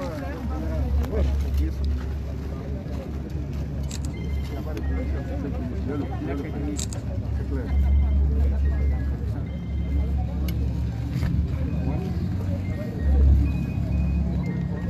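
Background voices of a gathered crowd with faint music, over a heavy low rumble that swells in places.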